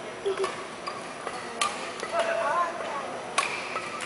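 Badminton hall between rallies: faint background chatter and hall noise, with three sharp isolated clicks a second or two apart and a brief squeak about halfway through.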